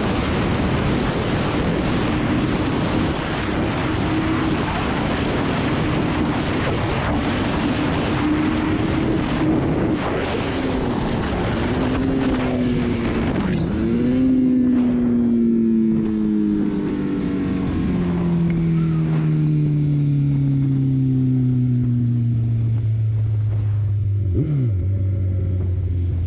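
Loud wind rush over the helmet-mounted camera at high speed. As the bike slows, the Kawasaki ZX14R's inline-four engine with Akrapovic exhaust comes through, its note falling steadily. The pitch jumps back up at downshifts about halfway through and again near the end.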